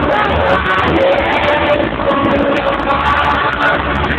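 Live cumbia band playing on stage, loud and continuous with a steady bass line, as heard in a large hall.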